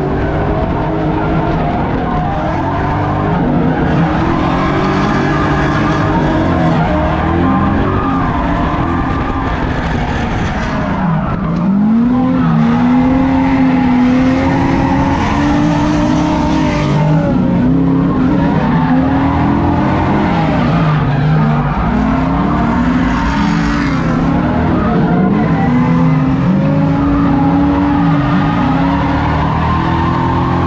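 Drift car's engine heard from inside the stripped cabin, revving up and down over and over while sliding, with tyre screech coming and going over it. It gets a little louder about twelve seconds in.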